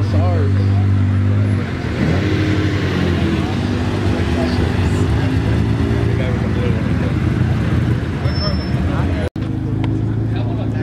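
Car engines running at low speed as cars roll slowly past one after another, with people talking in the background. The sound cuts off suddenly for an instant near the end.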